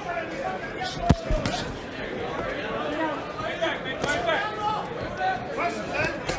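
Crowd and corner voices calling out around a boxing ring, with one sharp smack of a punch landing about a second in.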